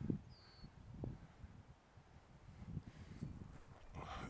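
Wind rumbling on the microphone, with a thump of handling noise at the start as a small unpowered glider is thrown side-arm, a light click about a second in, and one short high chirp about half a second in.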